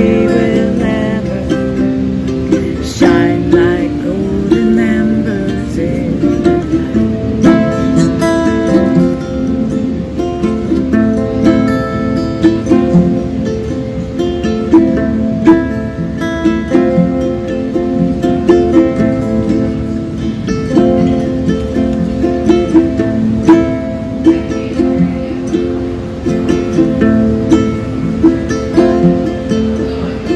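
Acoustic guitar and ukulele playing together in an unsung instrumental passage of a folk song, strummed chords under a picked melody.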